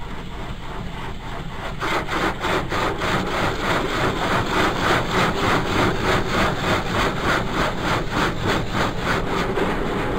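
Automatic car wash working over the car, heard from inside the cabin: a rhythmic swishing of water and scrubbing against the body and glass, about three sweeps a second, that grows louder about two seconds in.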